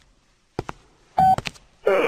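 A few sharp clicks, then a short high beep a little past halfway and two more clicks: light-switch sound effects as the floor lamp goes off. A man's voice starts near the end.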